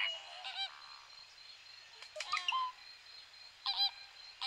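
Flock of American flamingos honking: short calls in scattered groups, one just after the start, a few about two seconds in, and a pair near the end.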